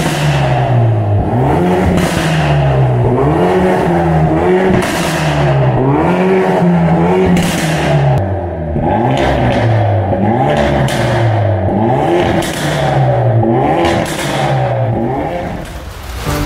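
Hyundai Veloster N 2.0-litre turbocharged four-cylinder, swapped into a Hyundai Excel, being revved repeatedly while parked, its pitch rising and falling about every two seconds, with sharp cracks between the revs.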